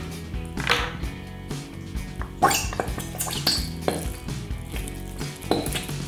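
Background music, with a few short plastic clicks and knocks as glue tubes and their caps are handled over a plastic tub.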